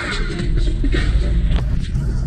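Steady low rumble of a car driving, heard from inside the cabin, with faint music underneath.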